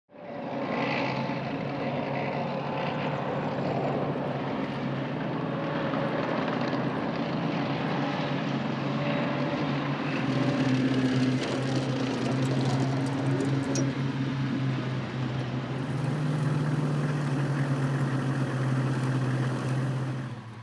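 Bradley infantry fighting vehicles driving, their diesel engines making a steady drone, with the engine note rising a little about three quarters of the way through.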